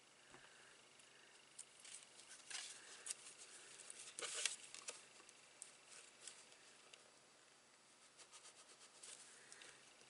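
Faint paper-craft handling: light rustles, small taps and clicks as small paper die-cut butterflies are glued and pressed onto a card, with a short scratchy rustle of paper about four and a half seconds in.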